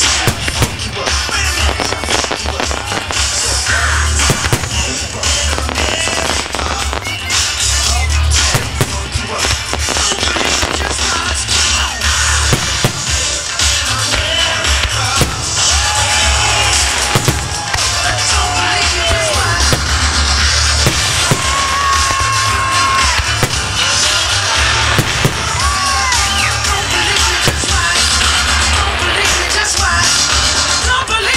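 Aerial fireworks shells bursting in frequent sharp reports over a music soundtrack with a heavy, steady bass line.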